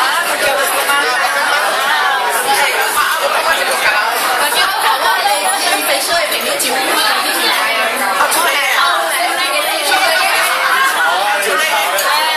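Continuous overlapping chatter of a group of people, many voices talking at once.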